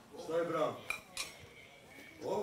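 A brief voice, then two light, sharp clinks about a third of a second apart, the second leaving a short high ringing tone.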